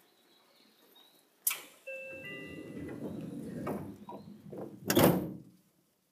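Seibu 2000 series commuter train's sliding doors closing: a click, a brief tone, the sliding of the door leaves, and a heavy thud as they shut about five seconds in.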